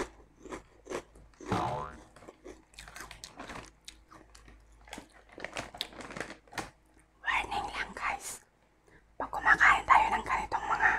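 Close-miked crunching and chewing of Chicharron ni Mang Juan snack pieces, a string of short crisp crunches. A little past the middle, the foil-lined snack bag crinkles as a hand reaches in. Near the end a voice speaks softly.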